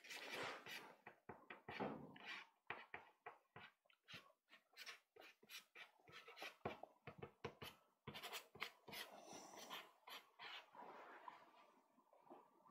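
Pastel stick scratching across pastelmat in quick, short, faint strokes, with a few longer strokes about two-thirds of the way through.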